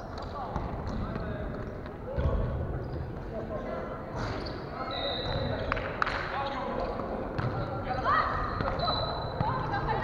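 Volleyball being hit and bouncing on a wooden gym floor in a large hall, a few sharp smacks, the loudest about four and six seconds in. There are short high squeaks of sneakers on the floor and players' voices calling.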